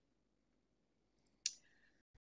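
Near silence over a webinar audio line, broken by one short, sharp click about a second and a half in.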